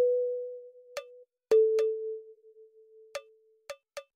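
A sparse passage of a lo-fi hip hop beat. Two long soft notes each start loud and fade, the second a little lower and starting about a second and a half in, over a few light percussion ticks.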